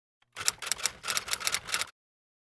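Typewriter keystroke sound effect: a quick, uneven run of about a dozen clacks lasting about a second and a half, stopping abruptly.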